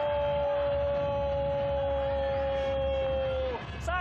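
A football commentator's long drawn-out shout of "gol", held on one high note for about three and a half seconds and then breaking off as a goal is called.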